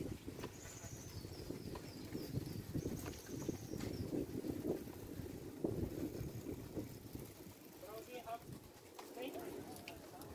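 Low rumble and rustle of riding a bicycle with a handheld phone, with birds calling: a series of high thin notes in the first few seconds and lower calls near the end.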